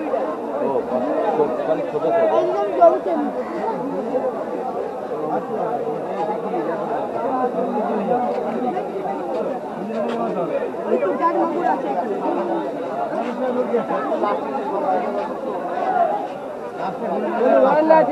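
Steady chatter of many voices talking at once, none standing out clearly.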